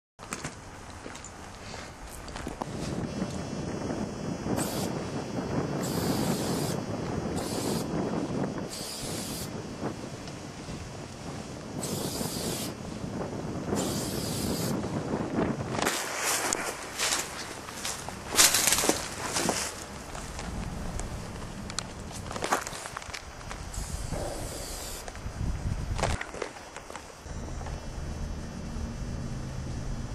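Aerosol spray-paint can hissing in repeated short bursts of about half a second to a second, spaced a second or more apart, with rustling and handling noise in between.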